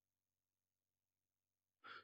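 Near silence: room tone, with a faint intake of breath near the end.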